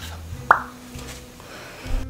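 A single short pop that drops quickly in pitch, about half a second in.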